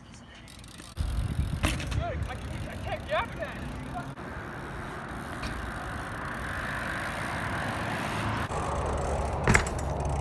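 BMX bike tyres rolling on pavement, then the bike grinding along a painted metal roadside rail with a building scraping hiss, ending in one sharp thud as it drops off near the end.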